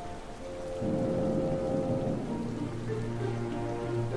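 Soft orchestral music, sustained notes that change about two seconds in, over a steady hiss.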